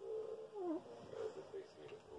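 A pet giving long, wavering whine-like vocal sounds while play-wrestling, with one call dipping and rising in pitch about half a second in, then a brief lull near the end.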